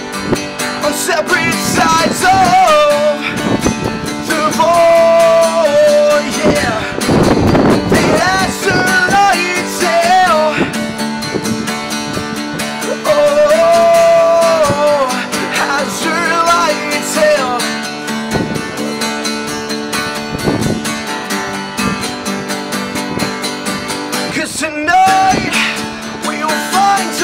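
An acoustic guitar strummed while a man sings, holding some long notes. For several seconds near the end the guitar plays on alone before the singing comes back.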